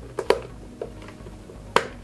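Plastic clips of a Ford Fiesta Mk7 side-mirror cover clicking as the cover is pressed onto the mirror housing: two quick clicks shortly after the start, a faint one, then a louder sharp click near the end.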